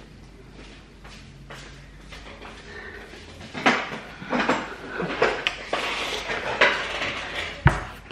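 Quiet room tone, then from about halfway a string of short knocks and bumps as a person sits down at a kitchen table, with one sharp thump near the end.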